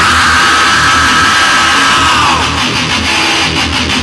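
Distorted hardcore punk / heavy metal band recording: electric guitar, bass and drums playing loud and dense, with a high held note that bends down in pitch a little after two seconds in.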